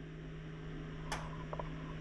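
Welder switched on and idling, a steady low electrical hum, with a faint click about a second in.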